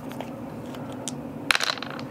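Two six-sided dice rolled into a laser-cut wooden dice tray, landing in a quick clatter of clicks about one and a half seconds in.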